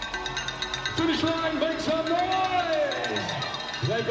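An excited voice shouting one long drawn-out cry that rises and falls, over background music. It sounds like race commentary at a sprint finish.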